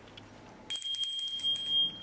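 A bright, steady bell ringing starts suddenly about two-thirds of a second in and holds for over a second. Before it there are faint, evenly spaced ticks.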